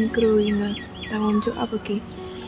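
A small bird calling in a rapid series of short, sharply falling chirps, about four a second, that stop about three-quarters of the way through.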